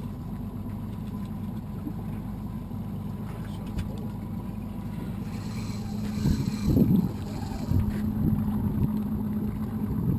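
Evinrude outboard motor idling with a steady low hum. A brief hiss comes in about five seconds in, and a few louder bumps follow over the next couple of seconds.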